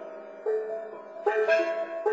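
Improvised music on a tuned instrument: a melodic line of pitched notes, each with a sharp struck or plucked attack and a short ring. One note comes about half a second in, and two more come close together just past a second in.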